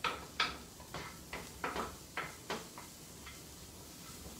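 Light clicks and taps of a cooking utensil against a pan, about ten of them at an uneven pace, stopping shortly before the end.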